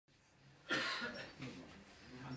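A person coughs once, suddenly, about two-thirds of a second in, and then a low voice is heard.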